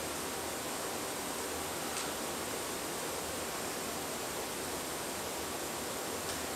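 Steady background hiss of room tone with no speech, and one faint click about two seconds in.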